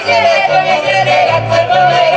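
Polish folk band music: fiddles and accordion playing a lively tune over a double bass that changes note several times a second.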